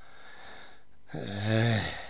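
A man's voice: one long, loud drawn-out vocal exclamation that starts about a second in, with a pitch that dips and then rises again.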